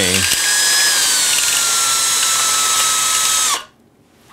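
Cordless drill spinning a larger bit through a hole in a 3D-printed plastic part, enlarging the hole so threaded rod will fit. The motor whine eases a little in pitch as it runs, then stops abruptly shortly before the end.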